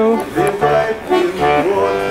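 Bayan (Russian chromatic button accordion) playing a short phrase of separate held notes that change about twice a second over a recurring low bass note.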